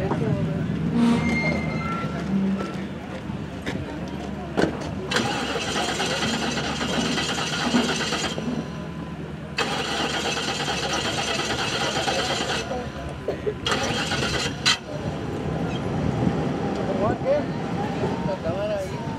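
Indistinct voices, with a motor engine running in three spells of a few seconds each, each one starting and stopping abruptly.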